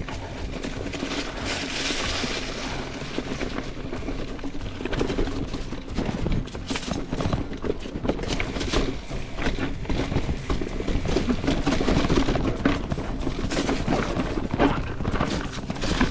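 Mountain bike jolting over rock: a dense, irregular run of knocks and clatters from the tyres, frame and drivetrain striking and rattling over rock slabs, above a steady low rumble.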